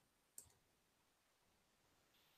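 Near silence, broken by one faint short click about half a second in.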